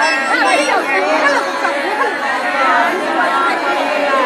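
Crowd of women talking over one another: loud, continuous chatter of many overlapping voices.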